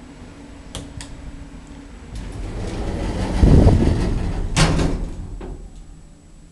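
Elevator door sliding along with a rumble that builds and peaks, then stopping with a sharp thud and a smaller knock, after two light clicks about a second in.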